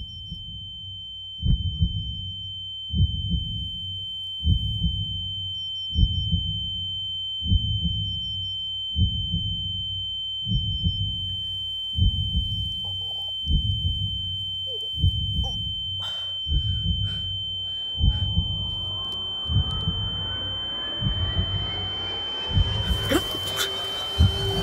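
Film sound design for a dazed, knocked-down moment: a steady high ringing tone like ringing ears over slow heartbeat-like thumps about every second and a half. From about 18 seconds in, several rising tones sweep upward.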